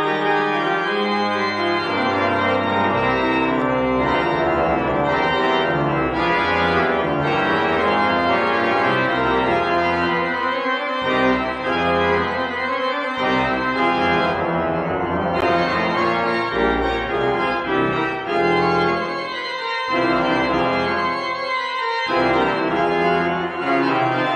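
Pipe organ playing a piece in full, sustained chords over a moving pedal bass, with a few short breaks between phrases.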